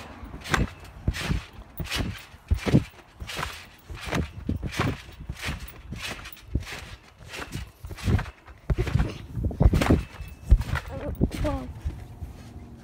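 A trampoline under a person bouncing on it: a steady rhythm of thumps from the mat, about one and a half bounces a second. Short voice sounds come in between, with a few brief pitched vocal sounds near the end.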